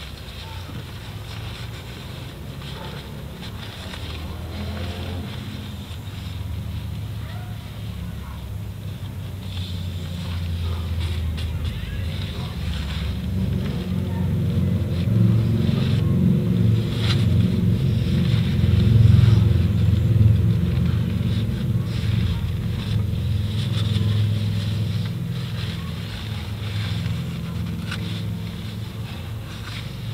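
An engine runs in the background, a low hum that swells toward the middle and then fades. Light rustling and small clicks come from a paper towel wiping out an engine's intake ports.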